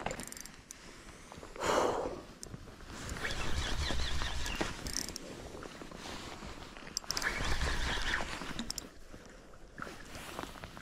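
A hooked king salmon splashing and thrashing in shallow river water near the bank, in three bursts a few seconds apart.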